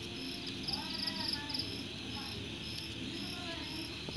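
Crickets chirping in a steady run of short, high trills, about two a second, with faint distant voices about a second in.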